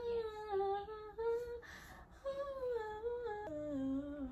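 A woman humming a wordless tune, holding each note briefly and stepping up and down in pitch, with a short break near the middle.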